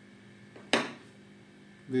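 A single sharp clink with a short ring about three-quarters of a second in, over quiet room tone.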